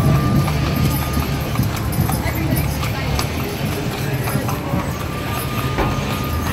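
Carriage mule's shod hooves clip-clopping on the paved street at a walk, the hoof strikes irregular over a steady murmur of street noise. A faint thin high whine comes and goes twice.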